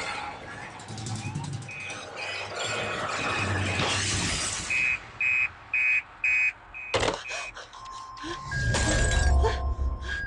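Dramatic film soundtrack: music with shattering and crashing effects. From about the middle, a run of short high electronic beeps comes about two a second, cut by a sharp hit about seven seconds in, and a loud low swell builds near the end.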